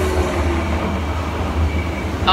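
Amusement-ride cars running along their track, a steady low rumble with no break.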